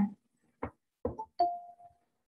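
A short chime rings once about a second and a half in and fades out over half a second, after a couple of brief soft knocks.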